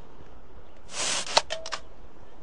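Aluminium soda can being opened: a short hiss of escaping carbonation about a second in, followed by a sharp click of the pull tab and a couple of fainter clicks. The shaken root beer does not burst.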